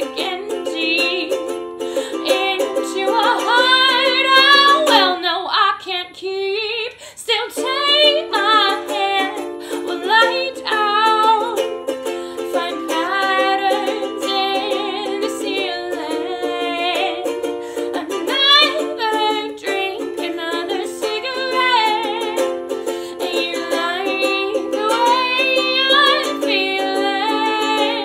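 A woman singing wavering, gliding vocal lines over a strummed ukulele. The ukulele stops for a moment about six seconds in while the voice carries on alone.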